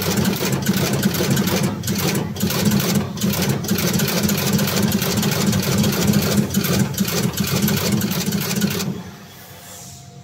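Automatic PCB component insertion machine running: a steady mechanical drone with brief dips every half second or so. It drops much quieter about nine seconds in.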